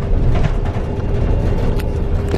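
Cabin noise inside a long-distance coach bus: a steady low engine and road rumble with a thin constant hum above it, and a couple of faint clicks.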